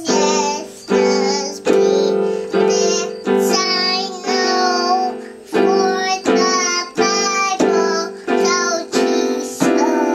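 A toddler singing along while pressing chords on an electronic keyboard with a piano sound. About a dozen chords are struck, roughly one every three-quarters of a second, each ringing under her wavering sung notes.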